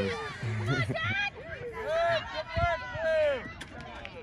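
Distant, high-pitched voices calling and shouting across a playing field, indistinct, with a brief low thump about two and a half seconds in.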